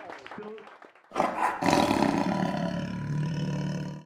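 Faint pub chatter fades, then about a second in a loud roar sound effect starts suddenly for an end-title sting and runs on until it cuts off abruptly.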